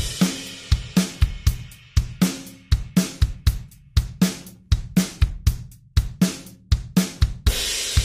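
Logic Pro X Drummer track on the SoCal kit playing back a plain, ordinary beat at 120 bpm: steady kick, snare and hi-hat/cymbal hits in an even rhythm.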